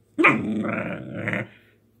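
Half-pit bull, half-mastiff puppy "talking": one drawn-out growly vocalisation that starts sharply just after the start, holds for over a second and trails off.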